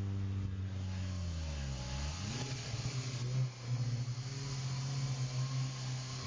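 Honda Civic four-cylinder engines racing side by side from a roll. The engine note drops in pitch over the first couple of seconds, sweeps back up, then holds a strong steady drone under full throttle, with rising wind and road noise.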